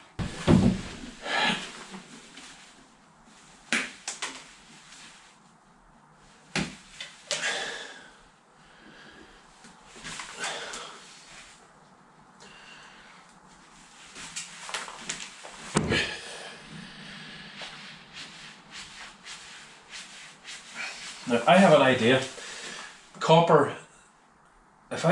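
Scattered clicks and knocks of hand tools and wiring being handled inside a wooden loudspeaker cabinet during repair of its horn-driver wiring.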